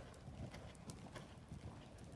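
Faint hoofbeats of a horse cantering on sand arena footing, with a few sharp clicks among the soft thuds.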